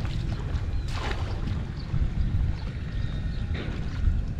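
Wind buffeting the microphone with a steady low rumble, and barefoot steps splashing through shallow muddy water and grass, the clearest splashes about a second in and again near the end.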